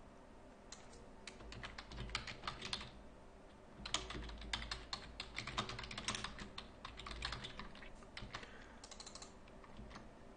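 Typing on a computer keyboard: two bursts of rapid keystrokes, split by a short pause about three seconds in, then a few more keys near the end.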